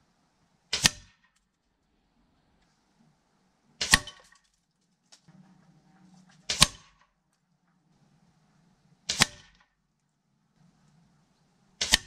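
Five shots from a Hatsan 6.35 mm break-barrel air rifle, pellets striking the paper target, each a sharp double crack, one about every two and a half to three seconds.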